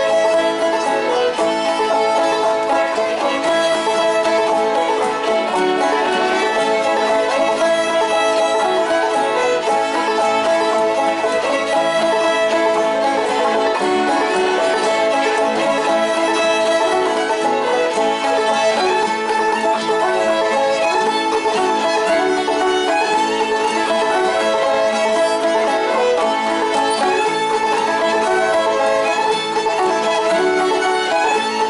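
Two fiddles and a banjo playing a fiddle tune together at a steady pace, with a guitar accompanying.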